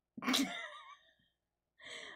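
A short, breathy laugh: one burst under a second long, starting just after the beginning and trailing off into an exhale.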